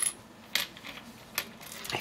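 Small plastic LEGO bricks and parts clicking against one another and on the table as a hand picks through the pile: a few sharp, light clicks, about half a second and a second and a half in.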